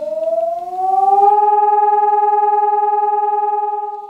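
Recorded civil-defence warning siren tone from a PASS Medientechnik loudspeaker system's instant player. The wail rises in pitch over the first second or so and then holds steady over a second, lower tone. It grows louder as the volume fader is pushed up.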